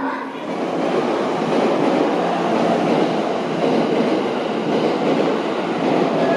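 A train running along the track at a station, a loud steady rumble of wheels on rail that builds over the first second and then holds.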